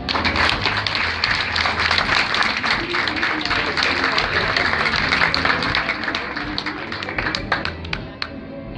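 Audience applauding, thinning out to a few scattered claps near the end.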